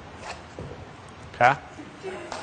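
Faint scuffs and a soft landing of a person kong-vaulting over a wooden vault box and coming down on the gym floor. A man says a short "OK?" about one and a half seconds in.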